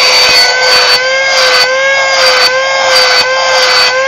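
Small cordless handheld car vacuum cleaner running: a steady, high motor whine whose pitch wavers slightly a few times as it is held and tested.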